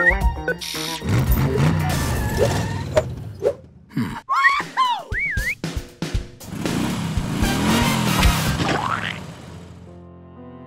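Cartoon sound effects over background music: a springy boing with wobbling up-and-down pitch glides around the middle, and a noisy engine-like effect in the second half that rises in pitch before fading near the end.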